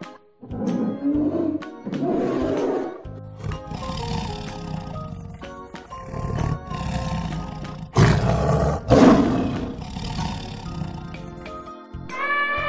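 Polar bear growling in the first few seconds, then tiger growling and roaring, with two loud roars about eight and nine seconds in, over light background music.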